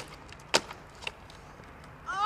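Skateboard knocking on pavement: one sharp wooden clack about half a second in, then a smaller knock about a second in.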